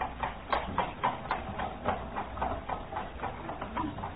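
Horse's hooves trotting, a steady clip-clop of about four beats a second, as the hired horse-drawn cab moves off; a radio-drama sound effect.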